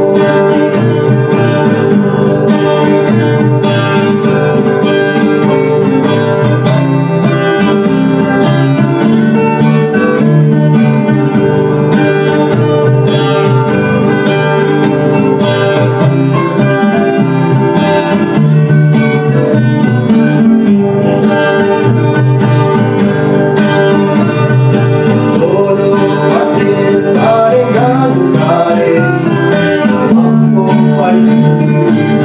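Acoustic Biak pop song from a small string band: strummed nylon-string guitar, a plucked melody guitar and a homemade stembas bass playing together, with a man singing.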